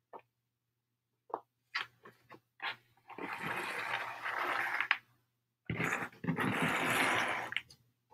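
Small painted wooden pieces clicking lightly as they are set down, then two long scrapes, each nearly two seconds, of a round wooden board sliding across the tabletop.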